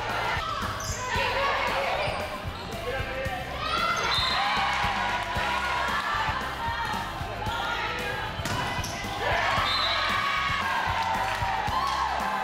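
Live gym sound of a volleyball match: players and spectators shouting and cheering, with thuds of the ball being hit and landing, echoing in the hall.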